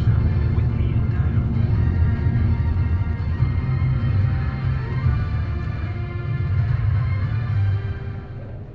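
Radio music: a deep steady bass under held sustained tones, dropping away near the end.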